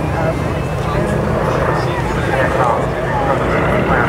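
Piston engines of two vintage aircraft, a Beech Staggerwing and a companion monoplane, droning steadily overhead as they fly past together, with voices talking over the engine sound.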